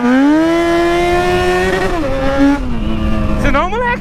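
Yamaha XJ6's 600 cc inline-four engine revved hard toward its rev limiter: the pitch climbs, holds high for about a second and a half, then falls back to a low, steady near-idle note about two seconds in.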